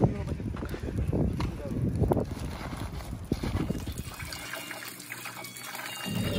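Indistinct voices over a low rumble, then, after a sudden change about four and a half seconds in, a kitchen tap running into a steel sink over raw chicken.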